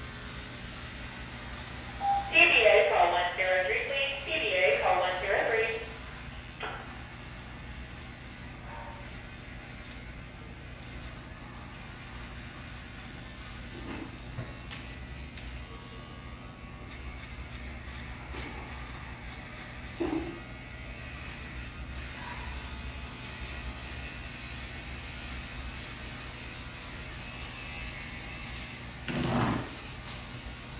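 Electric dog grooming clippers running with a steady hum as they trim a Shih Tzu's coat. A person's voice is heard loudly for a few seconds about two seconds in, and there is a low thump near the end.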